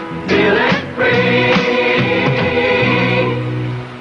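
A choir singing a commercial jingle over instrumental backing, ending on a long held chord that fades away near the end.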